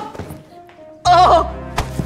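Dramatic background music under a scuffle: a short pained cry about a second in, then a sharp thud near the end.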